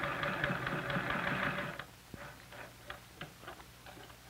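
A sewing machine running in a short burst of stitching, tacking the end of a collar in place, that stops abruptly about two seconds in. Light clicks and taps follow.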